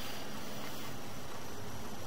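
Steady, even hiss of background noise with no distinct sounds.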